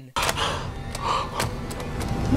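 Stock horror-film violin sound effect: a harsh, dense string sting that comes in suddenly just after the start.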